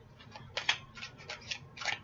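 A deck of Indigo Angel oracle cards being shuffled by hand: a run of quick, irregular clicks and rustles.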